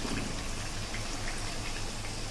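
Potato wedges deep-frying in hot oil in a steel kadai: a steady bubbling sizzle as a wire skimmer lifts a batch of fried pieces out.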